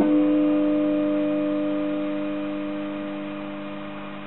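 Gretsch electric guitar's final chord ringing out and slowly fading away, with no new notes played: the close of the piece.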